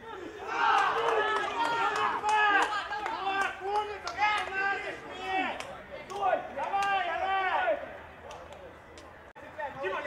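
Men's voices shouting and yelling in celebration of a goal, several loud overlapping cries that rise and fall, dying away near the end.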